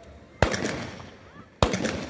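Ceremonial rifle volleys fired into the air by a police contingent: two volleys a little over a second apart, each a sharp crack followed by a few straggling shots and an echo.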